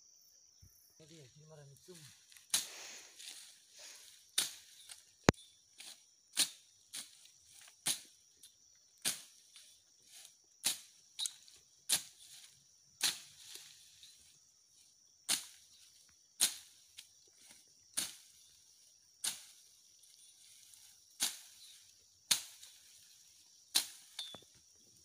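Machete chopping through weeds and brush to clear overgrown ground: sharp swishing cuts, about one a second, starting about two seconds in. A steady high insect trill runs underneath.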